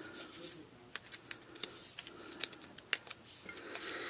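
Backing papers being peeled off small foam adhesive squares and paper handled between the fingers: scattered light ticks, snaps and short rustles.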